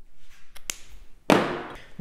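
Painting things handled on a wooden table: a sharp click, then a louder knock about a second and a half in that dies away within half a second, as a brush or the glass jar of brushes is set against the table.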